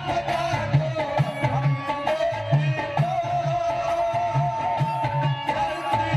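Live qawwali music: harmonium playing a held melody over a steady hand-drum beat of about two strokes a second.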